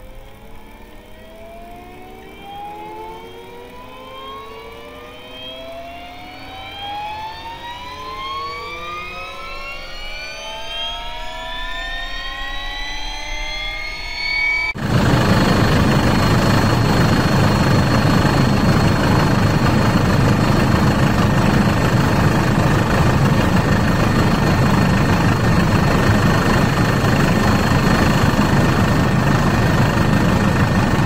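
Agusta A109 Nexus twin-turbine helicopter starting up, heard from inside the cabin: several whines rising steadily in pitch and growing louder as the engines and rotor spool up. About halfway through the sound switches abruptly to the loud, steady rush of the helicopter in flight.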